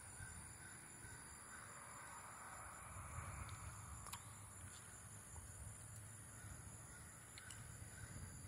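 Near silence: quiet outdoor ambience with faint distant bird calls.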